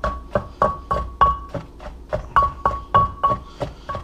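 Wooden pestle pounding chili peppers and mushrooms in a wooden mortar, a steady run of knocks about three a second, each with a short ringing tone.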